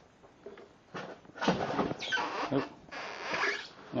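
Styrofoam packing and cardboard scraping and squeaking as a boxed air compressor is twisted and rocked to free it, in irregular scratchy bursts starting about a second in.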